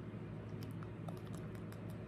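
Faint, quick clicks and crackles from a long-tailed macaque grooming a person's hair close to the microphone, starting about half a second in and coming several times a second, over a steady low hum.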